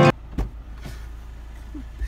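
Inside a parked car with the engine idling: the music cuts off abruptly, leaving a low steady hum in the cabin. A sharp click comes about half a second in, a fainter one follows, and a knock near the end comes as a door opens.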